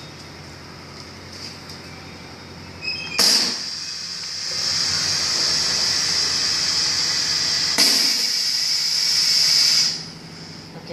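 Pneumatic piston filling machine cycling to dispense ghee: after a steady low hum, compressed air hisses loudly from about three seconds in as the air cylinder drives the fill stroke, with a second sharp rush of air near eight seconds, then the hiss cuts off suddenly at the end.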